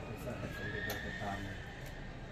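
A clothes hanger scraping and clicking on a metal clothes rail as a garment is lifted off. A thin squeal lasts about a second, with a sharp click in the middle of it.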